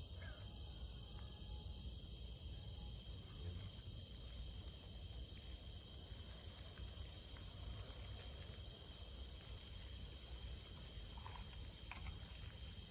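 A steady, high-pitched chorus of crickets, faint over a low rumble.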